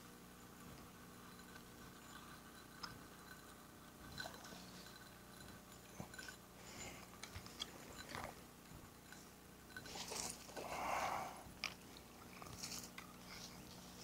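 Faint, irregular clicks and rustles of a fishing rod and reel being worked while a hooked bass is reeled in, with a louder rustle about ten seconds in.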